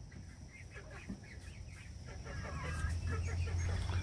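A small flock of hens clucking and chirping softly, growing a little busier and louder in the second half, over a low steady hum.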